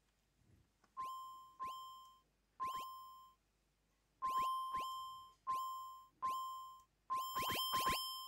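Bespoke Synth's three-operator FM synthesizer playing a run of short sequenced notes, each starting with a quick downward pitch drop into a steady high tone that fades out. The first comes about a second in, and the notes crowd closer together near the end.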